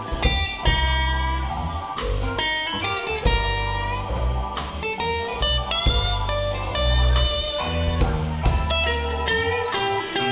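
Live blues band playing an instrumental passage: electric guitar playing lead lines over drum kit and keyboards, with a heavy bass line underneath.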